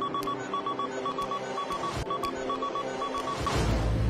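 Electronic data-readout beeping: quick high beeps in clusters of three or four, about two clusters a second, over a steady electronic tone bed. It stops shortly before the end, as the cannabis analyzer's results are displayed.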